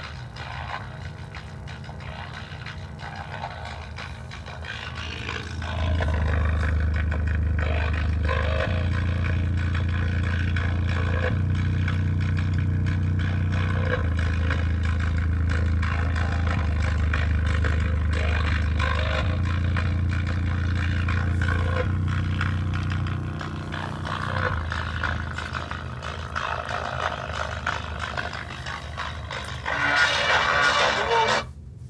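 A bare Dayton Audio woofer driver, out of any enclosure, playing bass-heavy music loud. Held bass notes change pitch every couple of seconds before easing off, and there is a brief, brighter, louder burst near the end.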